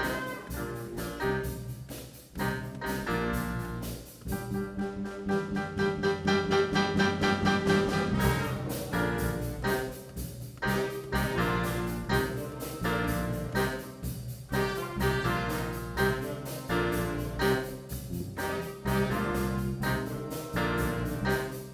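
School jazz band playing live: horns over piano with a steady swinging beat. Around five to eight seconds in, the horns hold a long chord.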